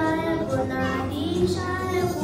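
A boy singing a Hindu devotional song to Ganesha into a hand-held microphone, holding long drawn-out notes that change pitch about every half second to a second.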